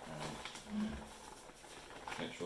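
A man's brief wordless vocal sounds, low and hummed, twice in the first second, then a quieter stretch.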